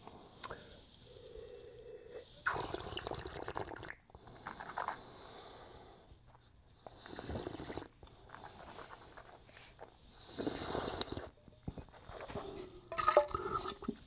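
A wine taster drawing air through a mouthful of white wine in several separate noisy slurps, each about a second long, working the wine around the mouth.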